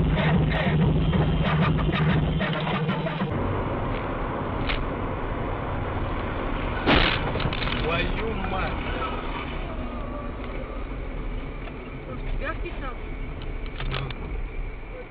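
Car cabin road and engine noise picked up by a dashboard camera. It changes abruptly about three seconds in, when a steady low hum gives way to steady road noise. About halfway through, a single sharp, loud bang stands out.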